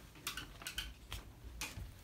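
Faint, scattered paper rustles and small clicks as a letter sheet and a folder are handled.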